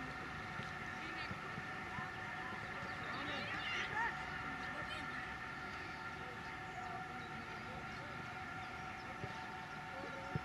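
Distant shouts and calls of young footballers across the pitch, a little louder about four seconds in, over a steady hum of several high tones.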